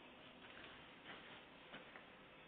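Near silence: faint hiss with three soft ticks spread across two seconds.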